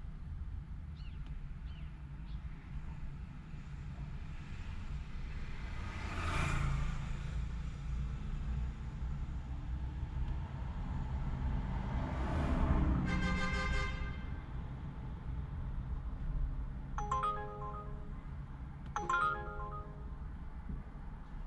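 Car engine idling steadily in a stopped car, heard from inside, while two vehicles pass by in front, each swelling and fading. About thirteen seconds in, a steady electronic tone holds for about a second, and near the end a short electronic ringtone-like melody sounds twice.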